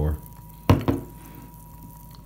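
Two quick knocks on a hard surface about two-thirds of a second in, the first sharp and the loudest sound here, the second softer.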